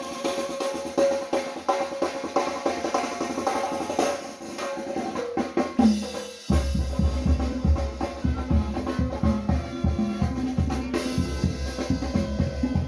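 A tamborazo band playing: brass carrying the melody over snare drum. The bass drum (tambora) is out for the first half and comes back in about six and a half seconds in, playing a steady beat.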